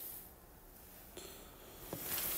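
Faint room tone with a short click right at the start and another soft click near the end.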